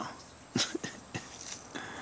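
A sulcata tortoise biting into raw spaghetti squash: a few sharp, crisp crunches in the first second and a half, with a brief low chuckle among them.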